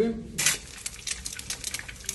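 An egg dropped into hot oil in a small frying pan over a wood fire: a sudden loud sizzle about half a second in, then a run of fine sputtering crackles.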